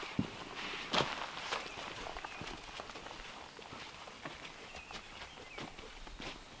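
Footsteps of a person walking over a forest floor littered with sticks and dead leaves: an uneven run of crunches and snaps, the sharpest about a second in.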